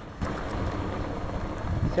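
Wind buffeting the microphone, an uneven low rumble, over outdoor street background noise.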